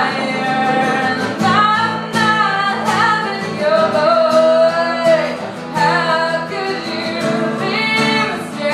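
A woman singing with her own acoustic guitar accompaniment, performed live; she holds one long note near the middle.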